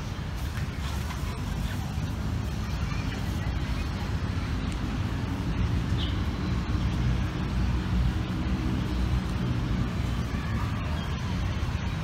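Steady low rumble of road traffic, with a vehicle engine growing a little louder through the middle.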